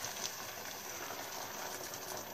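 Onions and choricero pepper frying in olive oil in a pan, sizzling steadily as white wine is poured in, with one small click about a quarter second in.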